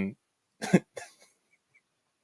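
A man's short, breathy laugh: one quick burst about half a second in and a fainter one just after.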